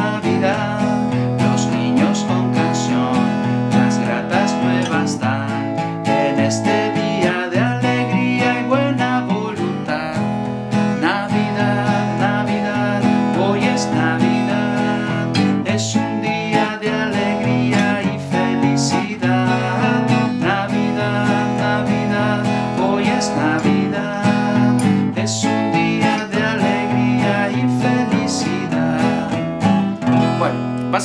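Acoustic guitar strummed steadily through a simple chord progression, alternating a stroke on the bass strings with a strum on the treble strings, with a man singing along to the carol.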